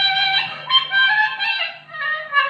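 A reed wind instrument playing a folk melody: a long held note breaks about half a second in into a run of short stepped notes, with a brief dip near the end.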